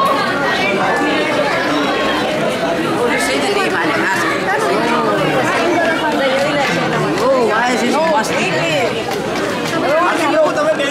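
Many voices talking at once in a busy room: steady overlapping chatter with no single speaker standing out.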